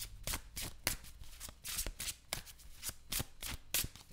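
A deck of oracle cards being shuffled by hand: a quick, slightly uneven run of short snaps as the cards slide and slap together, about three to four a second.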